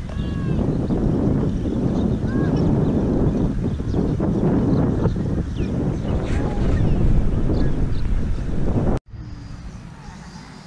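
Wind buffeting the camera microphone, a loud, uneven rumble, with a few short bird chirps above it. It cuts off abruptly near the end and comes back much quieter.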